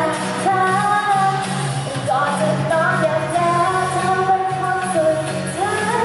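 A woman singing a pop song live into a handheld microphone over backing music, her voice amplified through the stage sound system.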